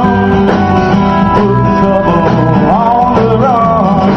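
Live band music: a man sings over a strummed acoustic guitar, backed by bass guitar and drums.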